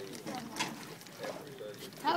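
Indistinct background voices of several people talking, with a few faint clicks.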